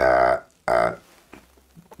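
A man's voice making drawn-out hesitation sounds, one long and one short, between phrases, followed by a short pause.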